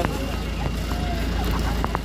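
People talking, over a steady low rumble.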